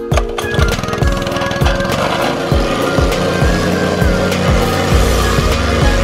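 Background music with a steady beat, mixed with a petrol-engined plate compactor (wacker plate) running and vibrating over crushed stone from about a second in.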